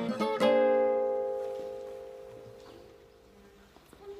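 Acoustic guitar strummed a few quick times, then a final chord struck about half a second in that rings out and slowly fades away, ending the song.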